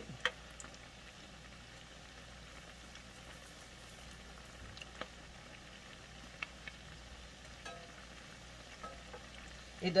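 Salmon croquettes frying in oil in a cast-iron skillet: a quiet, steady sizzle, with a few faint clicks as a metal spatula works the patties.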